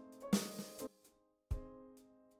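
Outro music: a drum-kit beat under sustained chords, breaking off briefly before a heavy bass drum hit about a second and a half in.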